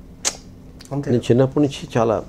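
A man speaking: a short sharp hiss about a quarter second in, then his voice resumes about a second in.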